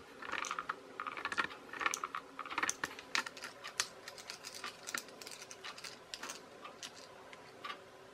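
Plastic toy housing parts and small screws being handled during disassembly: a run of light, irregular clicks and taps of plastic on plastic and on the tabletop, thinning out in the second half.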